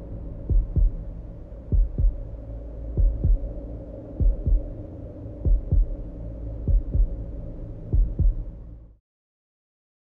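Dramatic heartbeat sound effect: slow double thumps, a pair about every second and a quarter, seven pairs in all, over a low sustained drone. It all cuts off suddenly about nine seconds in.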